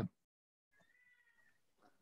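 Near silence, with a faint, thin high-pitched tone lasting about a second in the middle.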